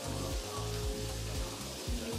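Background music with a steady, repeating bass beat over the sizzle of beef cooking on a Korean barbecue grill.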